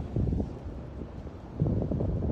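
Wind buffeting a phone's microphone: uneven, low-pitched gusty noise that swells shortly after the start and again near the end.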